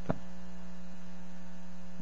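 Steady electrical mains hum in the sound system, a low buzz with several evenly spaced overtones that holds unchanged through the pause in speech.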